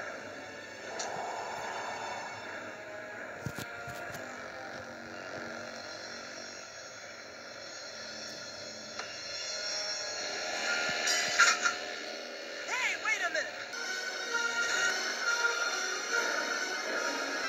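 Cartoon film soundtrack played through a TV: dramatic background music with sound effects, including two sharp hits about three and a half and four seconds in and a loud burst about eleven and a half seconds in.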